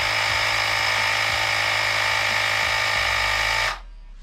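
Carsun cordless battery tyre inflator running steadily with a loud buzz while pumping up a bicycle tyre, then cutting off abruptly near the end as the pressure reaches the preset value.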